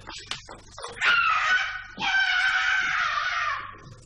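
A teenage girl screaming while being dragged away by force: two long, loud, high-pitched screams, the second longer and dropping slightly at its end. Short knocks of scuffling come before them.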